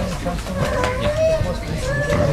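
Indistinct voices talking, one of them high-pitched, with no clear words.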